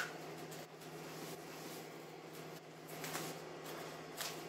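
Faint rustling and snapping of cannabis leaves and stems being stripped off the stalk by gloved hands, over a steady low hum.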